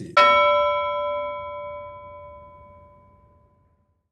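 A single bell chime struck once, ringing with several clear tones and fading away over about three seconds: an edited-in sound effect.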